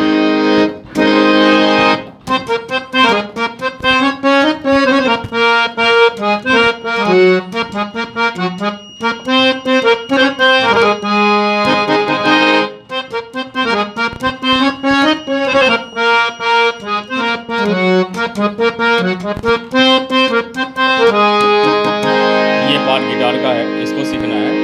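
Harmonium played with quick, short, detached notes, imitating a guitar's picked part, with held chords at the start, about halfway through and near the end.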